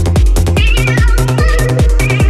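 Full-on psytrance track with a steady pounding kick drum and bassline. A high, wavering synth line comes in about half a second in.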